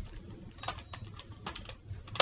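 Computer keyboard being typed on: several separate key clicks, irregularly spaced, as a word is entered.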